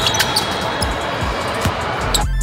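Live court sound of a basketball game on a hardwood floor: a ball bouncing a few times over the general noise of players and onlookers in a large gym.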